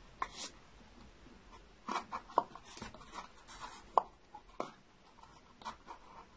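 A paper cup and crossed drinking straws being handled at close range: scattered light clicks and taps with soft rubbing, as a pin is worked through the centre where the straws cross. The sharpest clicks come at about two and four seconds in.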